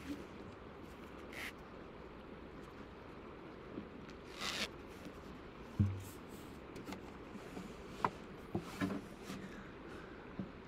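Scattered handling noises: faint rustles and scrapes, a few light clicks, and a soft low thump about six seconds in.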